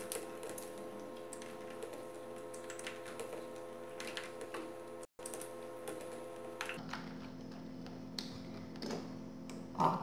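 Spatula stirring condensed milk and cornstarch in a saucepan, scraping and lightly ticking against the pan at an irregular pace while the cornstarch lumps are worked out. A faint steady hum runs underneath.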